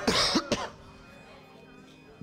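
A man coughing into a handkerchief: one harsh cough, then a shorter second one about half a second in. Soft held music chords continue quietly underneath.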